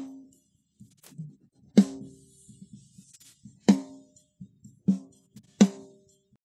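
Isolated snare drum track from a recorded drum kit, played through a de-bleed process that strips out hi-hat and tom bleed. Four loud snare hits sound, each ringing briefly, with only faint traces of the other drums left between them.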